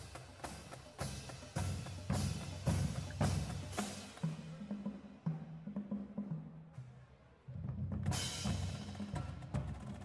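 High school marching drumline playing a cadence: snare drums and cymbal crashes at first, then the low drums play a run of pitched notes stepping up and down. After a brief break, the full line comes back in with a cymbal crash near the end.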